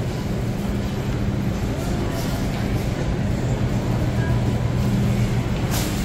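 Supermarket interior ambience: a steady low hum from refrigerated display cases and ventilation, under a faint wash of shoppers' background noise.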